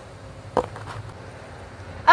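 Wind rumbling on an outdoor microphone, with a single sharp click about half a second in.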